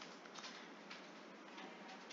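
Faint, irregular clicks of a computer mouse scroll wheel as a web page is scrolled, over a low steady hiss.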